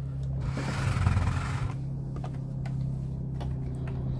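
Cotton fabric and batting rubbing and sliding across a tabletop as it is handled, loudest in the first second or two, over a steady low hum.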